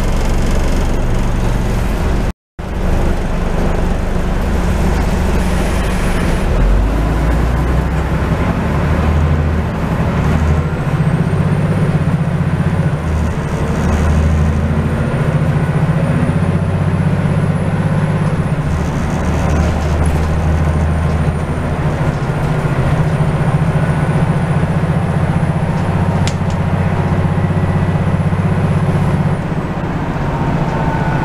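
Diesel engine of a Scania N94UD double-decker bus, heard from the upper deck with road noise while the bus is under way. The engine note shifts in steps several times as it changes speed. The sound cuts out completely for a moment about two seconds in.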